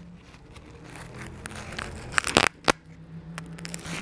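Crinkling and rustling from hands handling a small glitter-foam toy, with a few sharp clicks or crackles a little over two seconds in.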